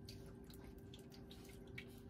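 Very faint taps and rustles of cardboard cards being slid across a cloth-covered table, over a steady low room hum.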